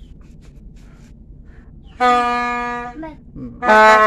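Toy trumpet blown in two steady single-note toots: one starts about two seconds in and fades over about a second, and a louder one begins near the end.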